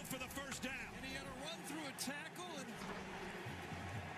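Game broadcast audio playing faintly beneath the reaction: a sports commentator calling the play over a steady stadium crowd noise.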